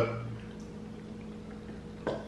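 Quiet room tone: a faint, steady low hum with no distinct events, after a voice trails off at the very start.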